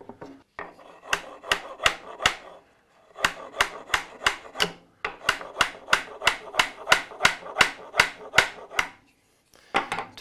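A small hammer tapping a truss rod down into its tight-fitting routed slot in a wooden guitar neck blank: a run of light, even taps, about three a second, with a short pause about two and a half seconds in.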